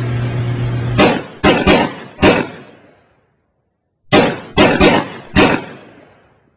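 Background music stops, then come sharp, echoing impact hits: four in quick succession, a second's pause, then four more, as a produced outro sting.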